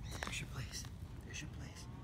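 Soft whispered voice, short breathy hisses coming every half second or so, over a low steady outdoor rumble.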